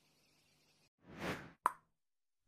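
Animation sound effect: a short whoosh that swells and fades, then a single sharp pop with a brief ringing tone, the loudest sound.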